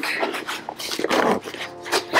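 Fabric rustling and rubbing as a small soft insulated cooler pouch from a disc golf bag is handled, with a brief faint pitched sound near the end.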